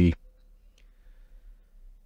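Near silence, with one faint click a little under a second in.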